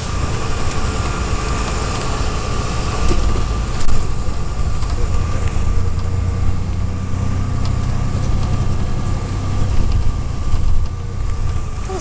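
Road and engine noise inside a moving car: a steady low rumble with a faint steady whine above it, the rumble swelling for a few seconds in the middle.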